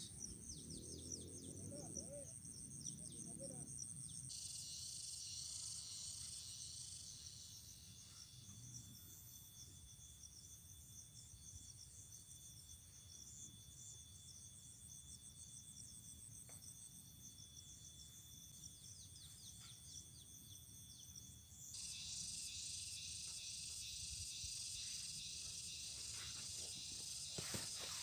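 A faint, steady, high-pitched chorus of insects chirring, its pitch pattern shifting a few seconds in and growing louder about three quarters of the way through. A few light clicks and rustles near the end.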